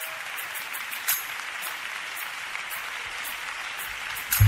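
A church congregation applauding, a steady wash of clapping.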